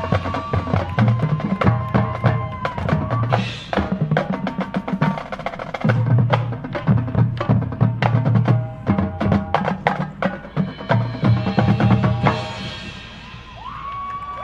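Marching band playing a loud, drum-heavy passage: rapid snare and bass drum strokes under held band notes. The playing stops about twelve and a half seconds in and the level falls.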